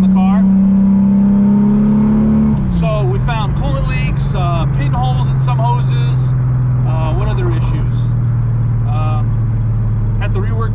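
Turbocharged 24-valve VR6 engine heard from inside the car's cabin, droning steadily under way; about two and a half seconds in the revs drop and the drone settles at a lower, steady pitch.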